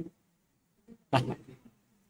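A man's voice saying one short word about a second in, after a brief click at the start; otherwise near quiet.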